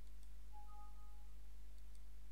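Windows alert chime, a short two-note tone about half a second in, as a warning dialog pops up asking whether to replace an existing file. It sounds faintly over a steady low electrical hum, with a couple of faint mouse clicks.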